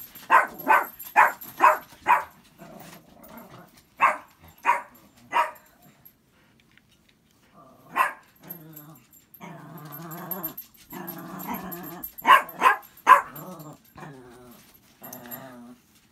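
A female dog barking in short, sharp barks: a quick run of them at the start, three more around four to five seconds in, then a longer drawn-out vocalising with a few more barks near the end. She is alerting her owner that the telephone made a noise.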